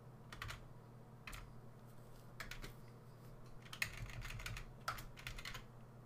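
Faint computer keyboard typing: scattered keystrokes in short, irregular clusters, busiest around the fourth to sixth seconds.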